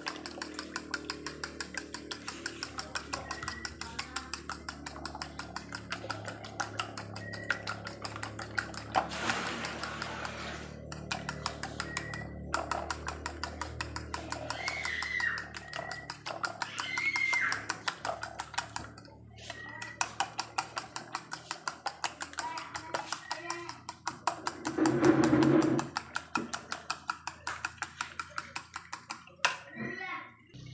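A fork beating eggs in a ceramic bowl, clinking against the side in a quick, even rhythm of about three strokes a second.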